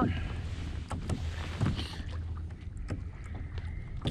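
Wind rumbling on the microphone over water around a kayak, with a few light clicks and knocks about a second and a half in.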